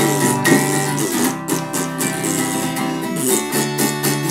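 Acoustic guitar strummed, with mouth-blown raspberries standing in for farts over the chords.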